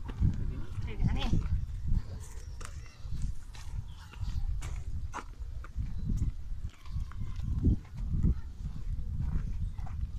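Footsteps on a dirt path with low rumbling handling and wind noise on a handheld phone microphone, scattered with short scuffs and knocks. A few faint pitched, voice-like sounds come in the first second or two.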